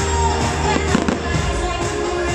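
Fireworks show music playing loud and steady while fireworks burst overhead, with a sharp bang about a second in.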